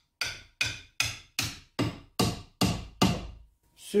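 A hammer striking the end grain of a wooden hammer handle about eight times in quick succession, each blow a sharp knock with a short ring, driving the handle into the hammer head resting on the vise jaws. The handle is being seated all the way home in the head, with hot-melt glue in the eye.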